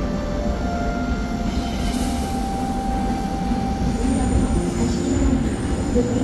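Korail electric commuter train running along the tracks: a steady low rumble of wheels on rail, with a few long, steady whining tones above it.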